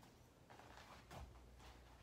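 Near silence in a small room, with faint scuffling and one soft thump about a second in as a dog jumps up and lands on a foam mat.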